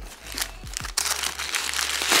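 Crinkling rustle of white paper stuffing being pulled out from inside a handbag, growing louder about a second in.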